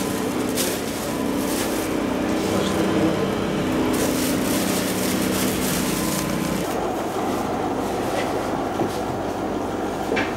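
A plastic carrier bag rustling as a takeaway order is bagged, over a steady mechanical hum with several low tones that cuts out about seven seconds in.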